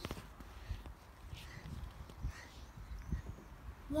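Irregular low rumble with soft thumps on an outdoor phone microphone.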